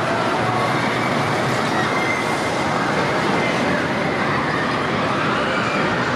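Steady rushing noise of a spinning chair swing ride, heard from one of its seats: air rushing past the microphone over the constant din of a busy amusement hall, with faint voices in it.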